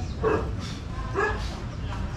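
A dog barking twice, short sharp barks about a second apart, over a low steady background rumble.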